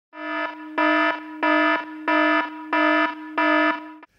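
Electronic alarm tone: one low, buzzing pitched tone held throughout and swelling louder in five even pulses, about one and a half a second, stopping just before the end.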